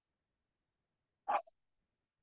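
Quiet, then one brief sound of a person's voice, about a second and a quarter in.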